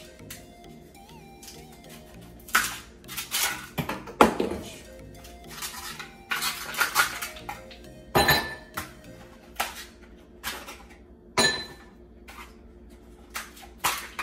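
A plastic ice cube tray being twisted and handled to free ice cubes, giving a series of sharp, irregular cracks and clinks, some as ice knocks against a glass.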